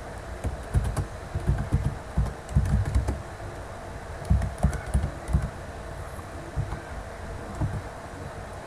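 Typing on a computer keyboard: irregular keystrokes in short runs, thinning out over the last couple of seconds.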